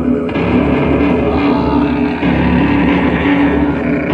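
Loud live rock music: a dense, sustained distorted band sound with a droning, steady low end and no pauses.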